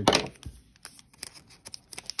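Foil trading-card pack wrapper crinkling in the hand: a brief loud rustle right at the start, then faint scattered crackles.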